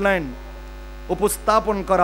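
A man's amplified preaching voice, which trails off and pauses for most of a second before resuming, over a steady low electrical hum that runs under everything.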